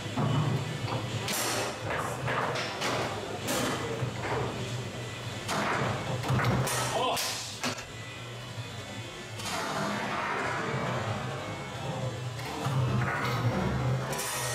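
Foosball table play: the ball is struck by the men and the rods knock against the table, a series of sharp, irregular knocks about a second apart, over background music.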